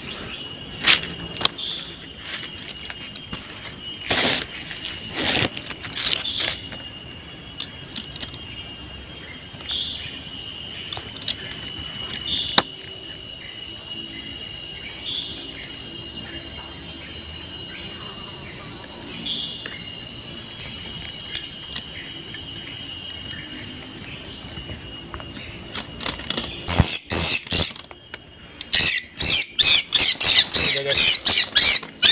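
Steady, high-pitched drone of a forest insect chorus, with a few faint clicks of handling. Near the end comes a rapid series of loud, shrill squeals from a freshly trapped songbird held in the hand, typical of a bird's distress calls.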